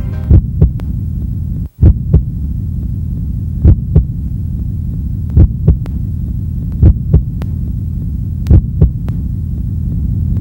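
Heartbeat sound effect in a presentation video's soundtrack: a steady low hum with a double thump about every second and a half, played over loudspeakers.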